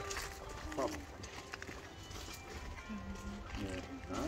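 Mobile phone ringtone playing faintly as a few steady notes stepping in pitch, with a short "mm" hum from a voice about a second in and more voice near the end.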